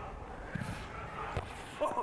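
Faint background voices over steady outdoor hum, with a single soft thud about one and a half seconds in. A man's shout starts right at the end.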